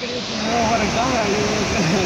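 Steady rush of surf breaking on a sandy beach, with faint voices talking underneath.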